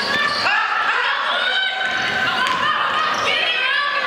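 Basketball shoes squeaking again and again on a hardwood gym floor as players cut and stop, short high squeals overlapping throughout.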